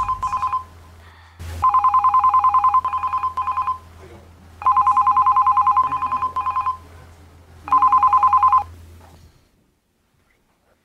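A telephone ringing with an electronic, rapidly pulsing two-tone ring. Each ring lasts about two seconds with a short break in it, and three more rings follow about three seconds apart. A single click falls just before the second ring, and the last ring is cut off short.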